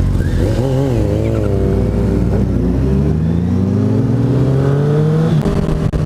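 Motorcycle engine accelerating hard through the gears. Its pitch climbs steadily and drops at a gear change about a second in and again just after five seconds.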